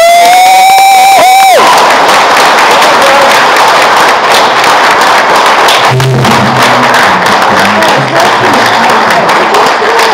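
A woman singing a long, high final note, sliding up into it and breaking off after about a second and a half. The audience then breaks into loud applause and cheering.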